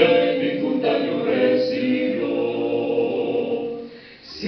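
Male vocal quartet singing a cappella into microphones, the four voices in harmony, ending on a long held chord that fades out just before the end.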